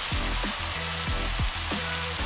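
Beef mince sizzling steadily in a hot oiled pan, left undisturbed to get a hard sear. Background music with a beat runs underneath.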